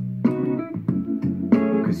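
Guitar-led pop song playing through a DIY Bluetooth speaker made from two salvaged Samsung home-theatre speakers driven by a PAM8403 2×3 W amplifier board.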